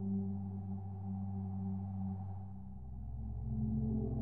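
Ambient electronic music made from processed harp samples, triggered live on an Ableton Push pad controller: sustained low drone tones that shift to a deeper bass note about two and a half seconds in, growing louder toward the end.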